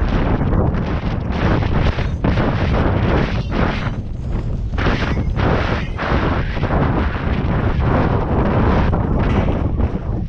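Heavy wind buffeting on a rider-worn camera's microphone at a gallop, over the uneven thud of the horse's hoofbeats.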